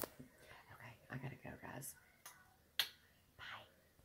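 Phone handled while it films, giving a few sharp clicks, the loudest about three seconds in, with a faint low murmur of voice between them.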